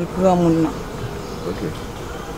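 A voice trails off in the first half-second, then a steady insect buzz continues over outdoor background noise.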